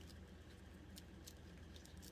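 Near silence: steady low room hum with a few faint light ticks.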